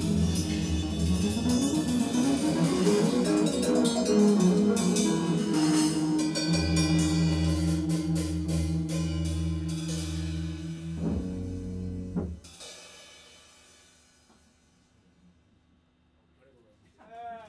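Electric guitar and drum kit playing free improvisation with busy cymbals and guitar lines sliding up and down, then a long held guitar note. The music stops about twelve seconds in and dies away over the next two seconds.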